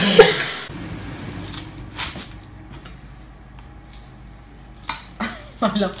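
Quiet kitchen sounds: a low steady hum with a faint hiss, broken by a sharp tap about two seconds in and a few more clicks near the end.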